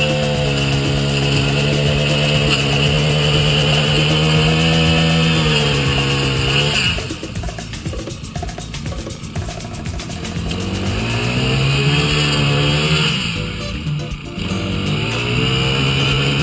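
Small four-stroke engine of a Honda bladed lawn edger running at high revs. The revs drop back about seven seconds in, pick up again a few seconds later, and dip briefly once more near the end.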